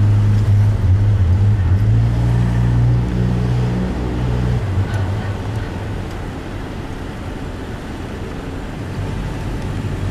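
A car engine running with a steady low hum, which drops back noticeably about halfway through.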